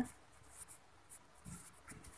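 Pen writing on paper: faint, scattered scratching strokes as words are handwritten on a lined notebook page.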